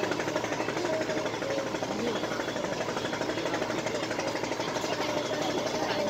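Diesel engine of a wooden country boat running with a rapid, even knocking beat, with voices in the background.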